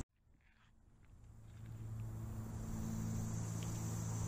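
Crickets trilling steadily, faint, over a low steady hum. The sound fades in from silence over the first second or so.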